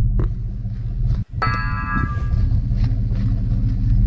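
A steady low rumble, broken by a sudden brief dropout a little over a second in. Right after the dropout comes a bell-like ringing tone with several steady pitches that lasts about a second and fades.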